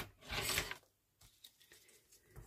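A click at the very start, then a short burst of paper rustling as a cut paper circle is handled and folded on a cutting mat. After that come a few faint taps and small sounds of fingers pressing the paper.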